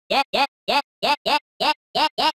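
A chopped vocal sample of the word 'yeah' retriggered as short slices in a stuttering rhythm, about seven hits in two seconds, gradually rising in pitch under pitch automation. This is the vocal pitch-rise build-up used before an aleteo/guaracha drop.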